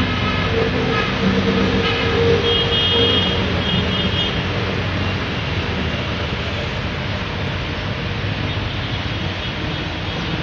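A diesel train approaching along the line, with a steady rumble. Its horn sounds over the first four seconds or so, ending in two short high notes about three and four seconds in.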